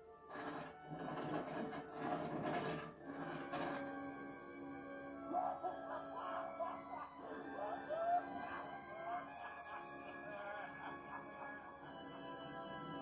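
Animated-film soundtrack heard through a TV's speaker. For the first few seconds there is a burst of noisy transformation sound effects over the music. From about five seconds in, a man laughs in long, wavering peals over the score.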